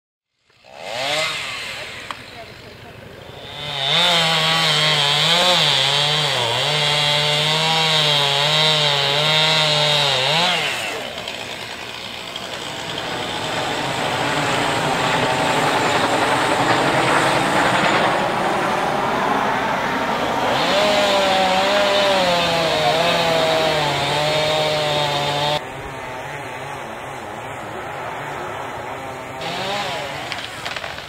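Chainsaw running at high revs and cutting, its pitch wavering up and down as it loads in the wood, in two long spells. Between the spells there is a steadier, noisier engine sound.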